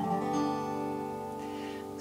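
Resonator guitar in open G tuning (D-G-D-G-B-D), its open strings strummed once to sound a G major chord that rings on and slowly fades.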